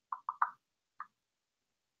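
Four short, soft clicks in the first second, with dead silence around them.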